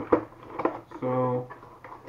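Cardboard gift-box packaging handled by hand, giving a couple of light taps. About a second in comes a short held vocal sound from a man, at one steady pitch.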